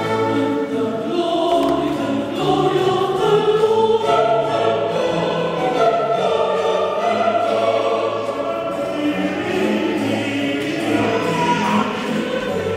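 Choral music: a choir singing held notes over an orchestral accompaniment.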